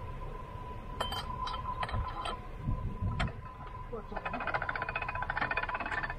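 Canal lock paddle gear being let down: a few sharp metallic clinks about a second in, then a fast, even run of ratchet-pawl clicks in the last two seconds, over a low steady engine rumble.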